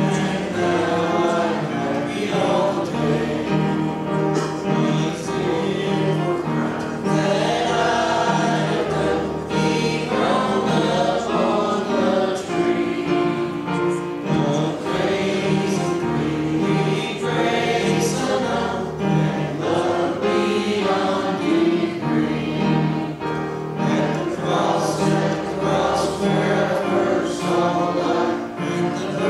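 A congregation singing a hymn together, with sustained sung notes and no break throughout.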